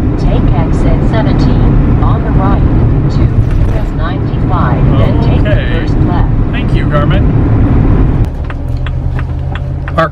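Steady drone of a vehicle's engine and tyres heard from inside the cab at highway speed. A little after eight seconds it drops to a quieter, lower hum.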